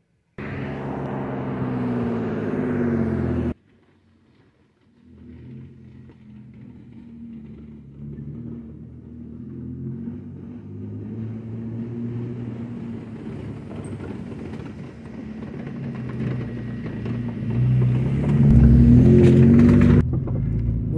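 Car engine running while driving a rough dirt road, heard from inside the cabin, growing louder toward the end. A first stretch of engine sound cuts off abruptly a few seconds in, followed by a short pause before it resumes.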